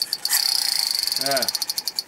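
Toy pistol giving off a rapid rattle of high clicks, about twenty a second, with a short break just after the start.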